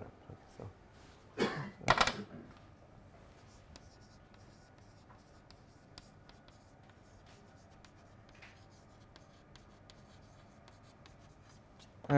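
Chalk writing on a blackboard: a run of faint, quick, irregular taps and scratches as a line of words is written. A couple of brief louder sounds come about one and a half to two seconds in.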